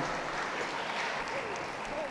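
Audience applauding steadily in a large show hall.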